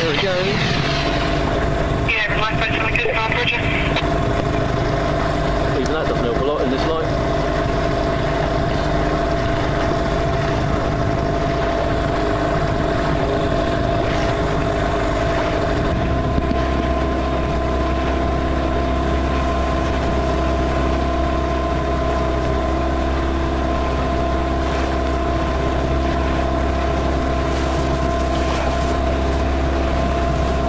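Outboard engine of a small inflatable rescue boat running steadily under way, a constant droning note. About halfway through, a deeper low rumble comes in under it.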